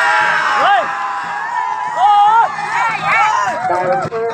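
Crowd of race spectators shouting and cheering, several voices calling out at once, with long rising-and-falling shouts about a second in, at two seconds and again near three seconds.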